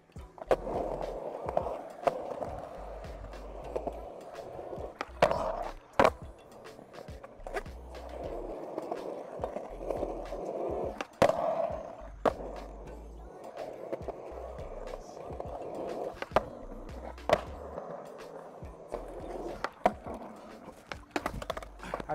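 Skateboard wheels rolling on concrete, broken by sharp wooden clacks of the board popping and landing, about nine times, as the rider works manual tricks.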